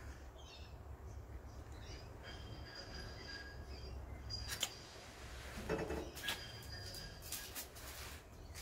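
Faint crunching and clicking of dry Weet-Bix wheat biscuit being chewed, with a steady high whistle-like tone twice in the background.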